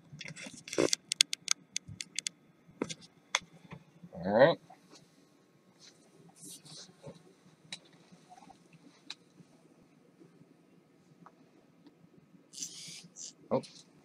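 Sharp clicks and knocks of a camera being handled and set down on the floor, then a brief vocal sound about four seconds in and a couple of soft rustles over a faint low hum.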